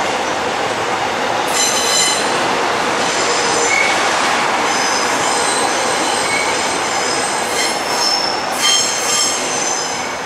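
Bundang Line electric multiple unit rolling past over the rails, with a steady rumble of its wheels and shrill wheel squeal that comes and goes, loudest about two seconds in and again near the end.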